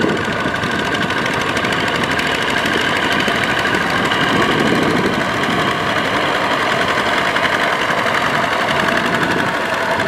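Kubota RT140 power tiller's single-cylinder diesel engine running steadily under load with a rapid, even knock, its cage wheels churning through deep mud and water.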